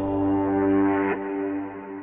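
Closing logo jingle: a held chord ringing on and slowly fading away, with a soft whoosh about a second in.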